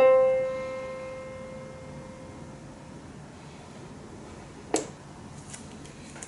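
A single middle C struck once on a digital piano, its sustain dying away over about three seconds. A short click follows a little later.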